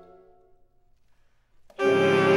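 Saxophone ensemble: a held chord dies away at the start, then a pause of about a second and a half, then the whole ensemble comes back in together on a loud, sustained chord near the end.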